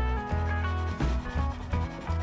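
A soft chalk pastel stick rubbed across paper, laying down a colour swatch, with background music playing over it.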